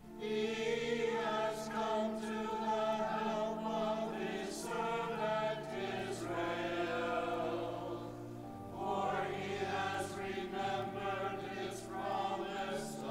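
A church congregation singing together in long held notes over steady, sustained low notes, with a short break between phrases a little past the middle.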